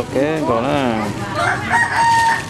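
A rooster crows in the second half, one long held note. A person's voice rises and falls just before it.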